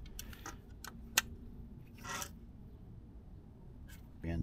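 A hand driver tightening a small screw into a plastic dash panel: a few light clicks, one sharper click about a second in, and a short scrape about two seconds in.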